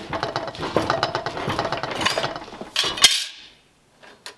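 Steel scrap clattering and clinking as a piece of eighth-inch steel is handled at a bench shear. About three seconds in there is one sharp metallic clank that rings briefly, then it goes quiet.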